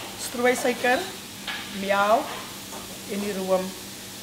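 A woman speaking in three short phrases over a steady background hiss.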